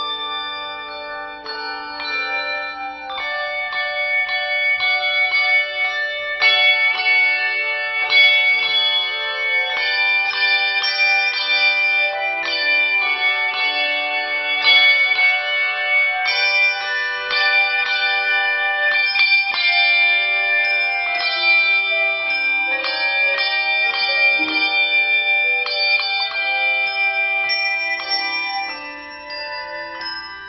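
A handbell choir playing a piece: many ringing brass bell notes struck in chords and runs. It grows louder after the first few seconds and softens near the end.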